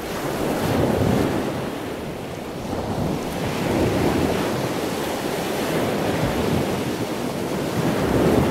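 Steady rushing noise, like wind on a microphone or surf, swelling and fading slowly.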